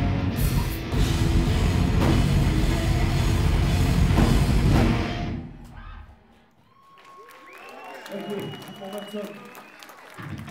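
Live hardcore punk band playing loud with drum kit and distorted electric guitars, the song stopping about five seconds in. The crowd then shouts and cheers, with a held high tone over it.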